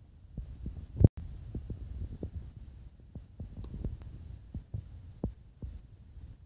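Low rumbling with irregular soft thumps throughout, and one loud, sharp knock about a second in.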